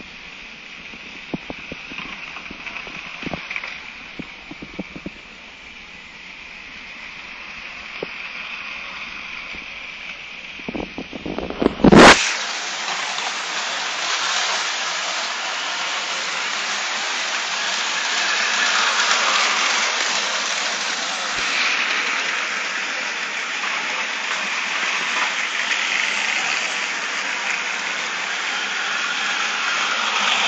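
Battery-powered Plarail toy trains running on plastic track: small electric motors whirring and wheels rattling, with scattered clicks in the first half. About twelve seconds in, after one loud click, the whirring becomes much louder and stays steady.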